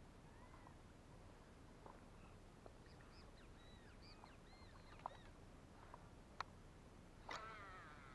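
Near silence outdoors with faint, high bird chirps in the middle, a few sharp soft clicks, and a brief falling whirring sound near the end.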